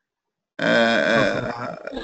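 A man's voice making a drawn-out vocal sound with no clear words, starting abruptly about half a second in after a moment of dead silence.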